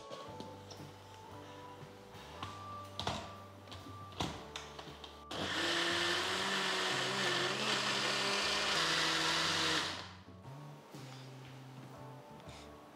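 Electric mixer grinder with a steel jar grinding rice flour, grated coconut and cooked rice into palappam batter. It runs loudly and steadily for about five seconds from halfway through, then cuts off. Before it starts there are a couple of knocks as the jar is set on the base.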